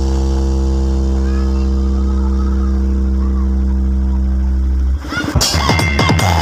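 A long, steady deep bass note played through a 12000-watt DJ speaker stack of bass bins and horn arrays, holding one pitch without change. About five seconds in it cuts off and an electronic dance beat with drum hits comes back in.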